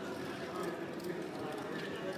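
Casino gaming chips clicking against each other as they are stacked and placed on a roulette table, a few sharp clacks over a steady background of crowd chatter.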